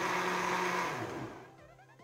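VonShef countertop blender running, its motor humming steadily as it churns a watery drink, then switched off about a second in, the hum falling in pitch as the blades spin down.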